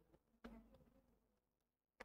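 Near silence, with a few faint clicks of handheld calculator keys being pressed.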